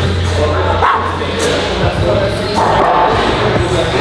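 Short wordless shouts and grunts from men straining and cheering on a heavy dumbbell shoulder press, over background music with a steady low bass.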